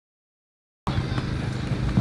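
Silence for almost a second, then a steady low rumble of outdoor background noise cuts in abruptly, with one faint click.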